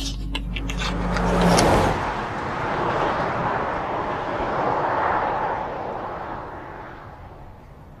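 Street traffic: cars driving past, their tyre and engine noise swelling and ebbing as they go by, then dying away near the end.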